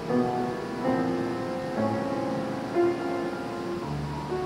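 Grand piano being played: a slow passage of sustained chords and melody notes, with a new chord struck about once a second.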